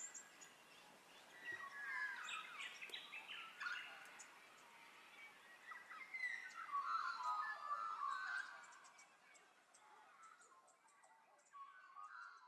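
Faint birdsong: several birds chirping and warbling, in two spells, the second fuller, before fading out about three-quarters of the way through.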